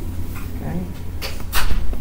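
A steady low hum, with a couple of sharp knocks or clatters close together about one and a half seconds in.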